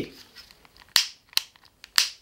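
A SOTO pocket butane torch's ignition trigger clicked several times, with sharp separate clicks about a second in and again near the end. No flame or gas hiss follows, because the torch's fuel lighter is empty.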